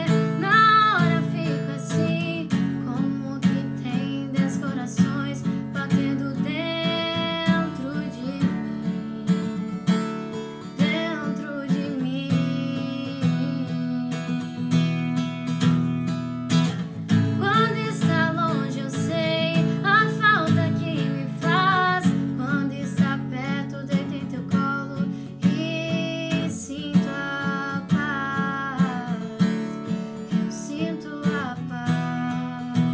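A woman singing a sertanejo ballad in Portuguese, accompanying herself on a strummed acoustic guitar.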